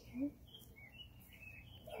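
Faint bird chirps in the background, a few short high calls through the middle.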